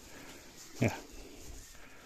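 A man says one short word, "mira", a little under a second in; otherwise only faint background hiss.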